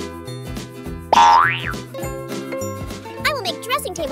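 Bright children's background music with a steady beat. About a second in, a loud cartoon boing sound effect slides up in pitch and back down. Near the end, a high, wavering cartoon-like voice comes in over the music.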